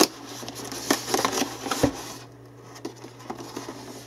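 Gaming headset being lifted out of its cardboard box insert by hand: light rustling of cardboard and plastic with scattered clicks and knocks, and one dull thump a little before halfway.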